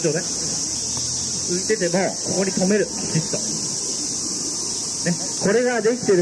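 Steady, high-pitched, continuous drone of cicadas singing.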